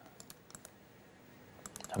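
Faint clicking of a computer keyboard: a few single clicks early on, then a quick run of keystrokes near the end.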